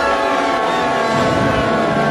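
Instrumental orchestral film music holding a sustained chord, with lower notes swelling in about a second in.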